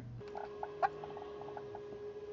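A quick run of faint, light taps as a password is typed on a smartphone's on-screen keyboard, over a faint steady hum.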